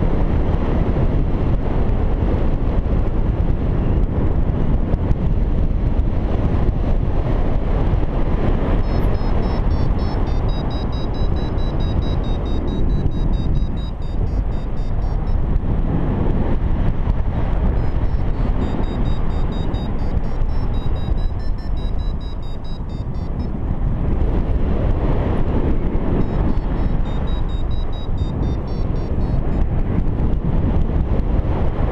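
Wind rushing over the microphone of a paraglider in flight. From about nine seconds in, a variometer beeps in quick, high-pitched pulses, with a couple of short pauses: the sign that the glider is climbing in a thermal.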